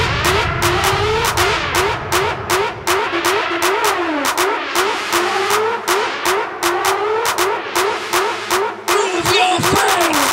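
Early-1990s hardcore (gabber) music from a DJ mix, in a breakdown: rising, rev-like synth swoops repeat about twice a second over fast hi-hat and clap hits. The heavy bass kick drum fades out through the middle.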